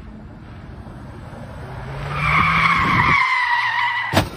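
SUV's tyres squealing as it skids through a tight turn on asphalt, a loud, steady high squeal that starts about two seconds in.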